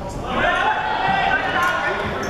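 Indoor futsal play on a hardwood sports-hall court: players' shoes squeaking on the floor, mixed with players shouting.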